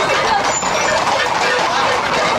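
Loud, continuous voices and shouts of a street crowd, mixed with the hooves of a group of Camargue horses walking on asphalt.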